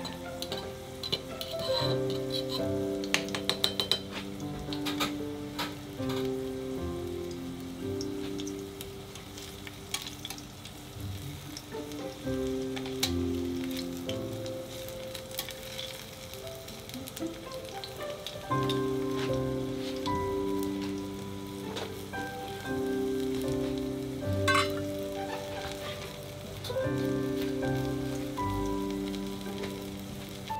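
Crushed garlic cloves sizzling gently in olive oil in an aluminium frying pan, with small crackles and a few clicks of metal tongs against the pan as the cloves are turned. Background music with held notes plays over it.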